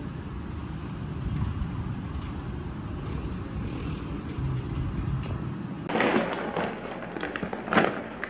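Steady low rumble of distant city traffic heard through a window, then, about six seconds in, the crackling and crinkling of a plastic dog-food bag being handled, loudest just before the end.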